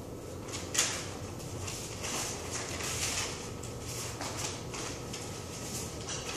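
Sheets of paper rustling as they are handled and unfolded: a run of short, crackly rustles, with one sharper crackle about a second in.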